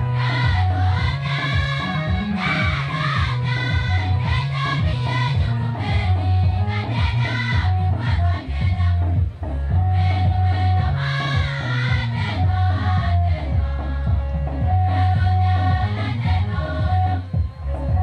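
A large church choir singing a Nuer gospel song together, carried over a steady low bass accompaniment.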